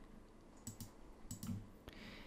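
A few faint computer mouse clicks, coming in two pairs.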